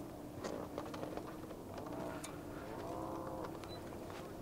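Two faint calls from an animal, each rising and falling in pitch, about two seconds in and again a second later. They sit over a low steady hum and a few soft ticks.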